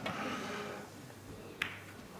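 A single sharp click of a snooker ball being struck, about one and a half seconds in, over a faint background hush.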